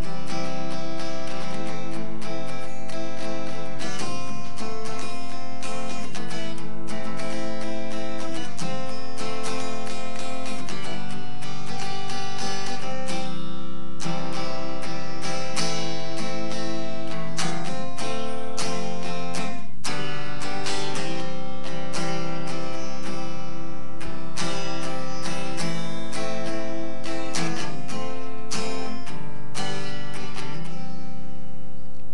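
A guitar strummed in a steady rhythm through the chords C, A minor, F and G, with no singing.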